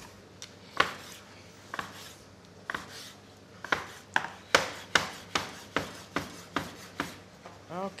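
Large knife chopping through a floured roll of fresh pasta dough onto a wooden board, cutting tagliatelle. At first a few sharp knocks spaced about a second apart, then from about the middle a steady run of about two or three cuts a second.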